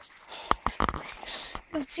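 A few sharp knocks and cracks about half a second to a second in, followed by a voice starting near the end.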